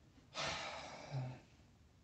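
A man's heavy exasperated sigh, a breathy exhale of about half a second, ending in a brief low grunt.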